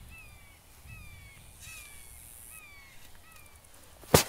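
A bird giving a run of short calls, each one sliding down in pitch and repeated at uneven intervals.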